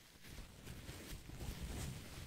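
White paper crumpled and crinkled in both hands close to a microphone: a soft, continuous crackling of many small clicks that grows gradually louder.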